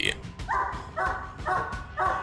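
Young Great Dane barking, a quick run of short, high barks about two a second.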